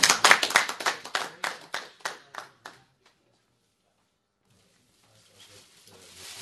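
Audience applause for a finished talk, heard as individual claps in a small room that thin out and stop about three seconds in. Brief dead silence follows, then faint room noise returns near the end.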